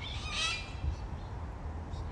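A bird gives one short call about half a second in, over a low steady rumble.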